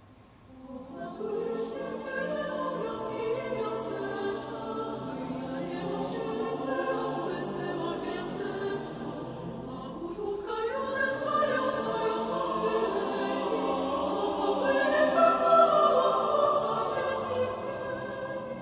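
Mixed choir singing a Polish Christmas carol, men's and women's voices in parts. The choir enters about a second in, breaks briefly near the middle, then swells to its loudest a few seconds before the end.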